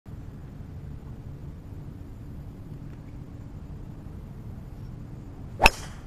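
A golf driver striking a teed-up ball: one sharp crack about five and a half seconds in, over a steady low background rumble.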